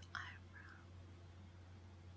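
Two short close-mic whispered sounds about a quarter and three-quarters of a second in, over a low steady hum; otherwise near silence.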